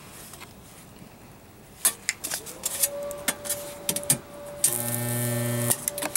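Homemade spot welder buzzing loudly for about a second as current passes through the electrodes clamped on thin galvanized sheet, then cutting off suddenly. It is held on long enough to burn a hole through the sheet. A couple of sharp metallic clicks come first, as the electrodes are set on the metal.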